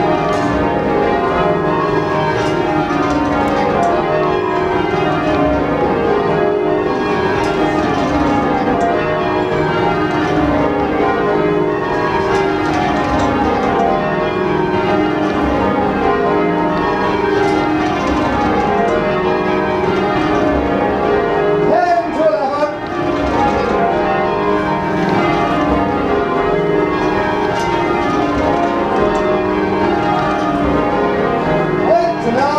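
Church bells being change-rung by a band pulling ropes in the ringing chamber below: a continuous, even run of bell strikes falling in repeating descending sequences. There is a brief wavering disturbance about two-thirds through.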